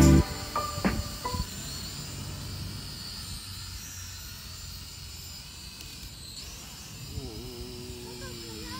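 A music track cuts off right at the start. Then a Hubsan H216A mini quadcopter's propellers whine thinly and high over a steady hiss, the pitch wavering as it hovers low and settles onto the sand.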